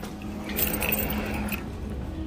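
A store's automatic sliding glass doors opening: a motor-driven whirr lasting about a second, starting about half a second in, over a steady low hum.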